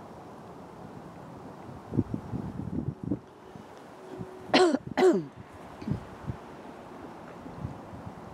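Two short vocal calls about half a second apart, each falling in pitch, over low wind rumble, with a run of low bumps a couple of seconds before them.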